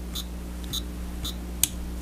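A single sharp click of a finger pressing the button on a Chronos GX digital chess clock, about a second and a half in. Faint ticks come about every half second over a steady low hum.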